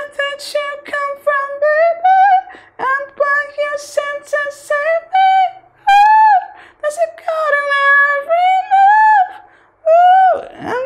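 A man singing unaccompanied in a high head voice: a string of held vowel notes that step up and down with short breaks, without clear words.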